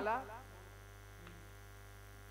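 Steady low electrical mains hum, after a man's voice trails off in the first half-second.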